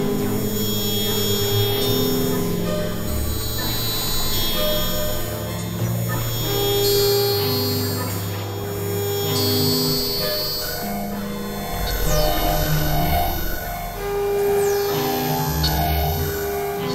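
Experimental synthesizer drone music: layered held tones, with low bass notes and middle notes shifting every second or two. A few faint high falling glides come in near the end.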